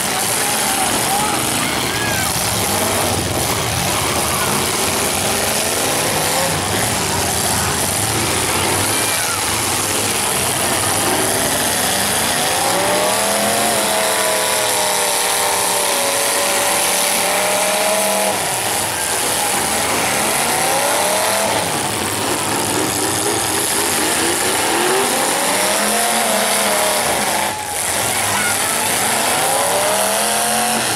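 Several demolition derby car engines running hard together, with long revs that rise and fall in pitch over a few seconds. The revs are most prominent about halfway through and again near the end.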